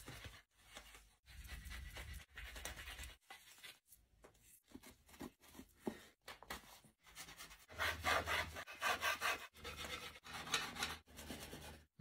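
A blade whittling a wooden stick, scraping and shaving the wood in repeated strokes, louder about two thirds of the way through.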